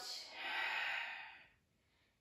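A woman's long audible breath out through the mouth, a breathy hiss lasting about a second and a half, paced to a slow yoga breathing count.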